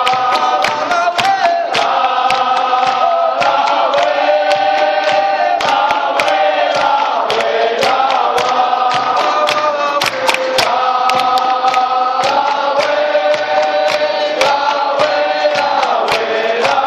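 Traditional capoeira music: a mixed group of men and women singing together in chorus, in phrases a few seconds long. Berimbaus played underneath, with sharp clicks of the sticks striking the wire and caxixi rattles throughout.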